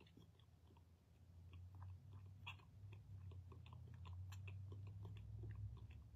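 Faint mouth clicks and lip smacks of a woman miming chewing gum, over a low steady hum.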